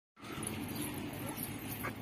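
A faint, wavering animal call over a steady low hum, with a light knock near the end.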